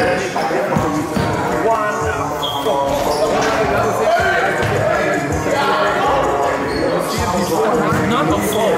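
A basketball bouncing on a sports hall floor in irregular thuds, under a steady layer of players' voices in the echoing gym.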